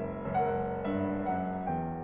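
Solo grand piano playing a classical passage, new notes and chords sounding about twice a second over sustained lower notes, growing gradually softer.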